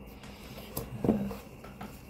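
Short knocks and rustles of a cardboard product box and a soft fabric carry case being handled as the case is lifted out, the loudest knock about a second in.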